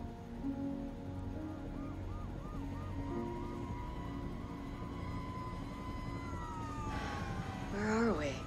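Film score with long held notes over a steady low helicopter rumble, with an emergency-vehicle siren yelping rapidly about three times a second from about a second in. Near the end a wailing siren tone falls away.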